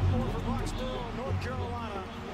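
Indistinct speech from a football game broadcast over quieter background music with a low bass line.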